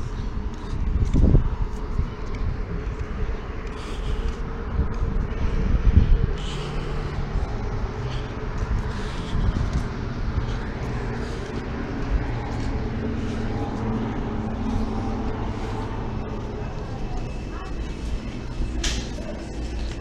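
Steady low rumble of urban outdoor background noise, with faint voices now and then.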